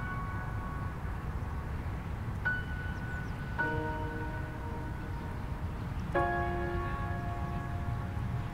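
Slow, widely spaced chime tones. Single struck notes about two and a half, three and a half and six seconds in each ring on for a second or more, over a steady low rumble.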